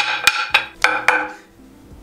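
Two halves of a broken wooden closet rod knocked together: a quick series of about five sharp, ringing wooden clacks in the first second or so.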